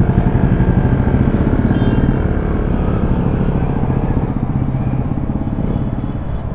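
KTM Duke 200's single-cylinder engine running steadily as the motorcycle pulls away from a standstill and rides through a junction.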